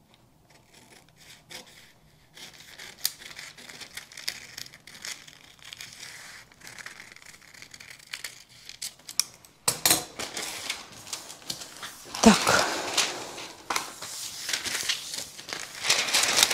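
Scissors snipping through two layers of thin pattern paper, a string of faint cuts along a curve. From about ten seconds in the paper sheets are handled, with louder rustling and crinkling.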